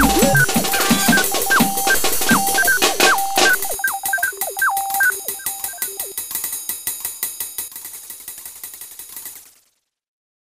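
Electronic music: repeating synth notes that drop sharply in pitch, over clicky percussion. The deep bass drops out right at the start, and the track fades away gradually to silence just before the end.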